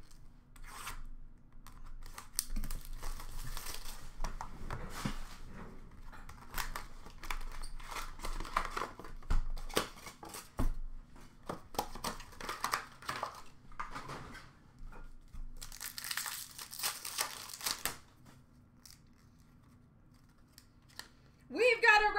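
Trading card packs and their box being torn open by hand: wrappers and cardboard tearing and crinkling in irregular strokes, with one longer, denser tear about sixteen seconds in.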